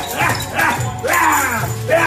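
A man shouting encouragement in short, loud, repeated calls ('Break!') over background music.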